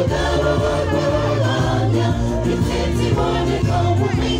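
A gospel choir singing live, many voices together over a steady low bass line.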